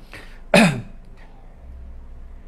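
A man clears his throat once, a short, loud voiced sound about half a second in whose pitch drops sharply.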